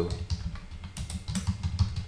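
Typing on a computer keyboard: a quick, uneven run of key clicks as a name is typed out.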